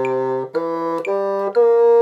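Bassoon playing a slow rising arpeggio, C, E, G and B-flat, each note about half a second, reaching up to D near the end. It is the opening run of the measure, slowed to steady even notes for practice.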